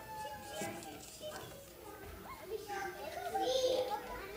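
Faint, overlapping chatter of several children's voices, growing a little louder in the second half.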